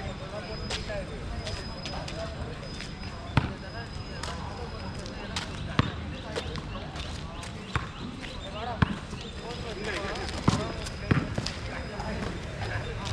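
Basketball bouncing on a hard court: a handful of sharp single bounces spaced irregularly, over distant players' voices.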